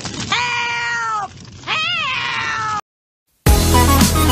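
Two high-pitched, cat-like cries over a low background bed: a long held one that falls at its end, then a shorter wavering one. A moment of silence follows, and loud electronic music starts just before the end.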